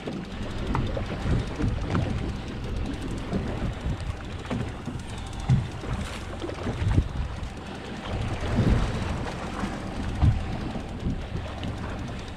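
Wind buffeting the microphone over a steady low rumble and water washing against a small fishing boat while a hooked fish is being reeled in.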